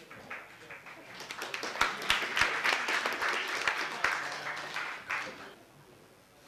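Audience applauding, the clapping swelling over the first couple of seconds and dying away about five and a half seconds in.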